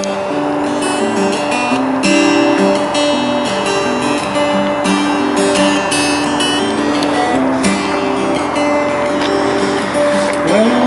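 Acoustic guitar strumming the introduction to a folk song, the chords changing about once a second.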